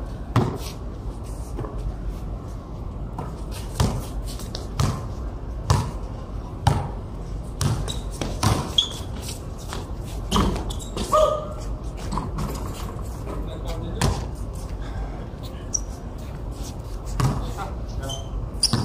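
A basketball bouncing on a concrete court: sharp, irregular bounces, often about a second apart.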